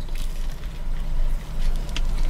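A bite into a breakfast sandwich and chewing, faint crunches over a steady low rumble inside a car.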